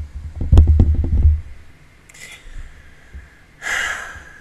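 A woman's heavy breathing and sniffing right against the microphone as she cries. Breath puffs blow onto the mic as a loud low rumble for the first second and a half, followed by a short sniff about two seconds in and another sharp breath near the end.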